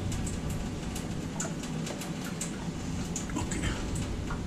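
Scattered light clicks and taps of a wet kitchen knife cutting a sushi roll into pieces on a wooden cutting board, over a steady low murmur from a television in the room.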